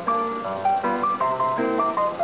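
Upbeat ragtime music, a melody of quick notes at about four to the second over a steady bouncing beat.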